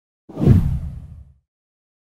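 A deep whoosh sound effect for an on-screen transition, swelling up sharply and fading away within about a second.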